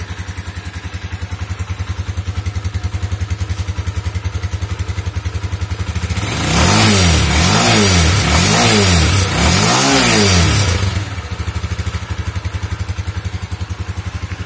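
Exhaust of a new, freshly assembled Mustang Region 200 motorcycle idling steadily, then blipped four times in quick succession about six seconds in, each rev rising and falling, before it settles back to idle.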